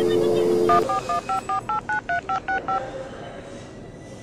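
Telephone dial tone for under a second, then about eleven touch-tone (DTMF) key beeps in quick succession as a phone number is dialed.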